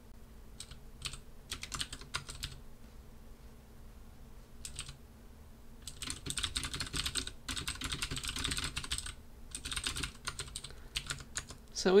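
Typing on a computer keyboard: scattered single keystrokes for the first few seconds, then fast runs of typing from about halfway through.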